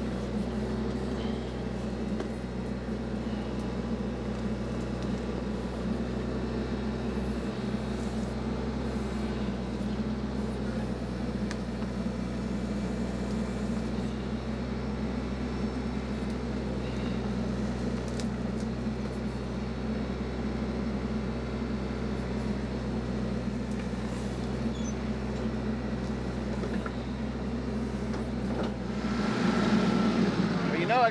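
TYM T264 compact tractor's diesel engine running steadily while it powers the rear backhoe digging out a stump.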